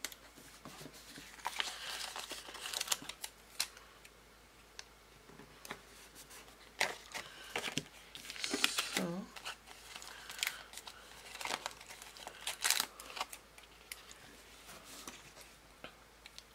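Paper handling: irregular rustles, crinkles and light clicks as vellum flower stickers are peeled off their sheet and pressed down by fingers onto a paper planner page.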